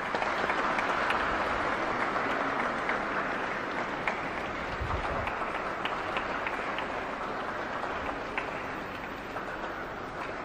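An audience applauding steadily. The applause swells at the start and slowly thins out.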